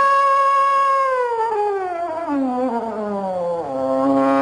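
Slide trombone holding a high note for about a second, then sliding slowly down in a long, wavering glissando to a low note near the end.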